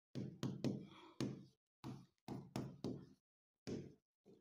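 Stylus tapping and knocking on a digital whiteboard screen as equations are written by hand: about a dozen short, faint, irregular taps.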